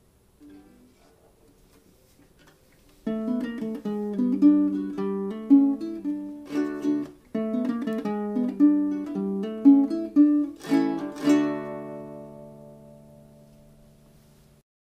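Baritone ukulele played solo: after a few faint notes, a short melodic passage of plucked notes and chords starts about three seconds in. It ends with a strummed chord that rings out and slowly fades.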